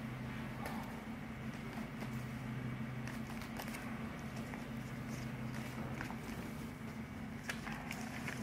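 Paper cards and envelopes being handled and leafed through: faint scattered rustles and light clicks over a steady low hum.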